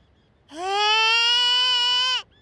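A cartoon kitten character's single long whining cry, starting about half a second in, rising in pitch and then held steady for about a second and a half.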